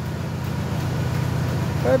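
Engine of a truck-mounted borehole drilling rig running steadily, a low even drone with no change in speed.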